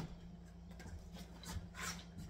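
Faint rubbing and rustling of a person moving and handling a plastic pouch, louder about a second and a half in, over a low steady hum. A brief click right at the start.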